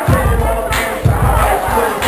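Loud party dance music with a heavy, regular bass beat, with a crowd shouting over it.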